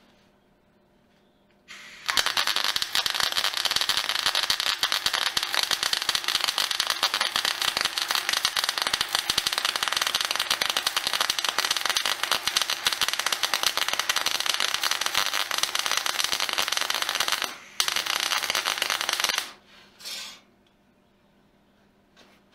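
Electric arc welding on steel: a loud, dense, steady crackle starts about two seconds in and runs for some fifteen seconds. It breaks off for a moment, resumes for under two seconds, then comes one short final burst.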